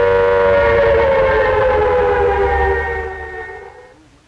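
Air-raid siren sounding a steady chord-like wail that slowly sinks in pitch and fades away near the end.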